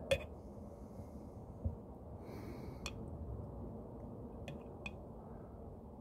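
Chopsticks stirring chunks of high meat in a glass jar: a few scattered, faint clicks and clinks against the glass over steady low background noise.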